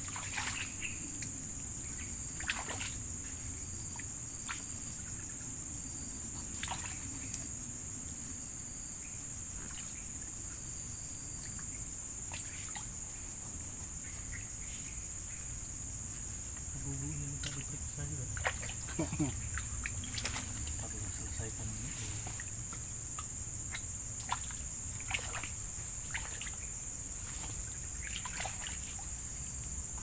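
Steady high-pitched insect chorus, with scattered short knocks and scrapes of a blade cutting fish on a wooden plank.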